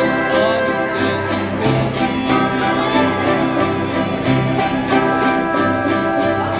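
Mariachi ensemble playing live: guitars strummed in a steady rhythm, about three strums a second, over a bass line of low plucked notes.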